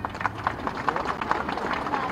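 Crowd clapping: many quick, irregular hand claps.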